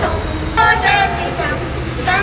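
Voices of people in a shrine, indistinct and without clear words, strongest about half a second in, over a steady low rumble.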